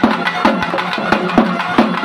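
Festival procession music: double-headed barrel drums beaten in a fast, steady rhythm of about four to five strokes a second, under the held, reedy melody of a nadaswaram-type double-reed pipe.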